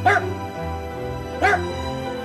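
Jack Russell terrier giving two short, high yips, one at the start and one about a second and a half in, over steady background music. The yipping comes from a dog fixated on sunlight stripes and shadows, the light obsession that laser-pointer play can leave behind.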